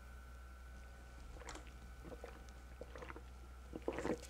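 Faint gulps and small mouth sounds of a person drinking from a can, a few soft ones through the middle and toward the end, over a steady background hum.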